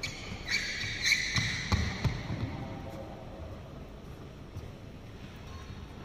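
Sports shoes squeaking on a badminton court mat, with a few knocks and footfalls, mostly in the first two seconds; after that only the quieter hum of the hall.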